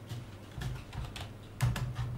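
Scattered, irregular clicks of typing on a computer keyboard, about half a dozen keystrokes with a pair close together near the end, over a low steady hum.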